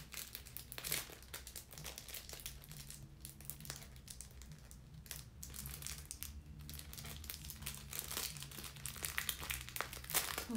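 Irregular crinkling and rustling with many small clicks close to the microphone, like handling noise.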